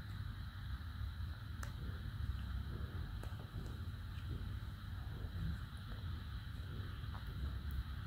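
Quiet steady background hum with a few faint soft ticks and rustles from yarn and a needle being handled.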